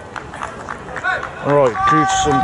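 Low outdoor background noise, then a person's voice from about a second in, louder in the second half.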